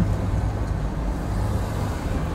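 Steady low rumble of a car heard from inside its cabin, engine and road noise with no single distinct event.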